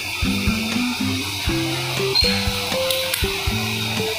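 Background music: a melody of short held notes stepping up and down in pitch over a steady beat.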